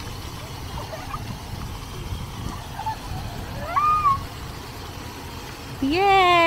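Wind noise on the microphone over the steady hiss of splash-pad fountain jets, with one brief high call about four seconds in.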